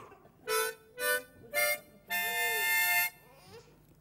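Harmonica played: three short single notes, each a little higher than the last, then a longer chord held for about a second.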